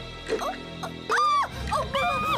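A cartoon skeleton character's high whimpering cries, two of them with falling pitch, the second louder and longer, over background music that changes about one and a half seconds in.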